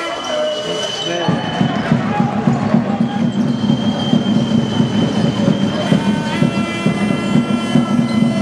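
Basketball game in a sports hall: sneaker squeaks on the court floor, over the noise of the hall. About a second in, a loud, fast, continuous rattling starts and runs on as the loudest sound.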